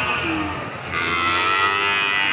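A calf mooing: a brief low call near the start, then one long call from about a second in that arches up and back down in pitch.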